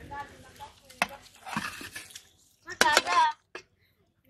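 A woman's voice speaking in short phrases, with a couple of sharp clicks, one about a second in and one near three seconds.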